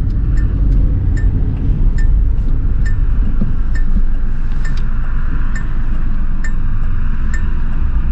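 Cabin sound of a 1972 Hillman Imp on the move: its rear-mounted all-aluminium four-cylinder engine and road noise run as a steady low rumble. Over it a turn-signal flasher ticks evenly, a sharper click a little under once a second with a softer one between.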